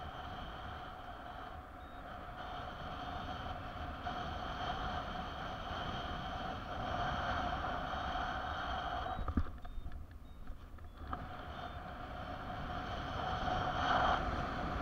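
Wind rushing over the camera microphone in paraglider flight, with a steady whistling tone that wavers in strength. After a sharp knock just past the middle, the rush and whistle drop away for about two seconds, then return.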